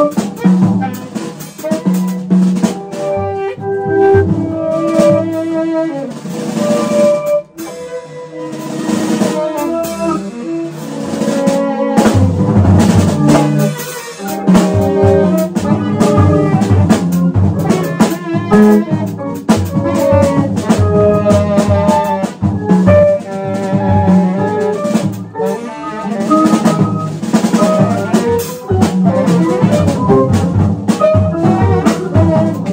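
Free-jazz improvisation by tenor saxophone, guitar and drum kit with Paiste cymbals: busy, irregular drumming under shifting, unmetred pitched lines. The playing thins briefly about seven seconds in, then the drums grow denser.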